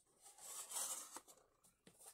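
Faint handling noise of a clear plastic desk organizer and sticky notes: a soft rustle followed by two light clicks.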